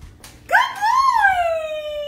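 A single long drawn-out vocal cry, rising in pitch and then slowly falling away.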